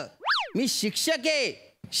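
Comic 'boing' sound effect: a short, clean tone that sweeps up and then back down in pitch, lasting about a third of a second, followed by a man talking.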